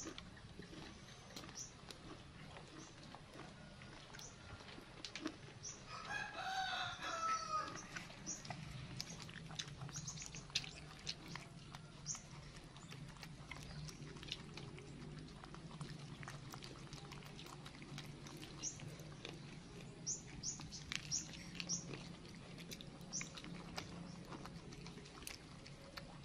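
A single pitched animal call, about a second and a half long, about six seconds in, over faint scattered ticks and a low steady hum.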